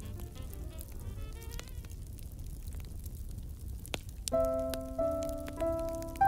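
A fire crackling with a low rumble and scattered sharp pops, under Christmas instrumental music. The music fades out in the first couple of seconds, leaving only the crackling, and a new piece starts about four seconds in with clear held notes.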